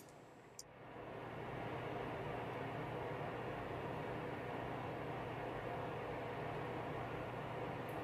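A steady hiss with a faint low hum, fading in over about the first second and then holding even.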